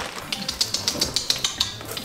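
Plastic bag of hay crinkling and rustling as a handful of hay is pulled out of it: a quick, irregular run of crackles.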